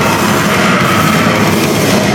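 Live rock band playing loud, heavy rock, with the drum kit prominent.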